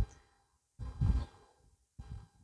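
A man breathing out close to the microphone: a short puff at the start, then a longer exhale like a sigh about a second in.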